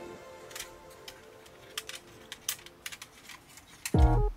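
Scattered sharp plastic clicks and snaps from a Transformers Unite Warriors Superion combiner figure as its parts are turned and pressed in the hands. Under them, background synth music fades away.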